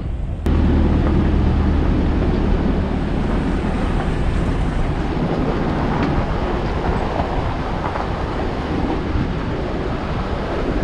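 Hummer H3 driving up a rocky dirt road: a steady rumble of tyres on gravel and engine, with a deep low drone underneath, cutting in abruptly about half a second in.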